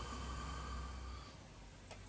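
A pause between speech, holding only a faint steady low hum and hiss of background room tone.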